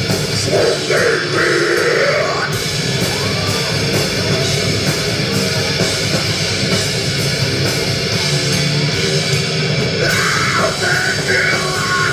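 Live rock band playing loudly and without a break, a drum kit driving the beat under dense amplified instruments.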